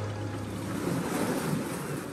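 Steady rush of water and wind on the microphone from a boat out on open water, with no music.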